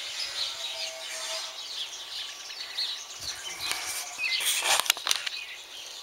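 Several small songbirds chirping and calling, with many short, scattered high chirps. A brief burst of rustling with a few sharp clicks comes about four and a half seconds in.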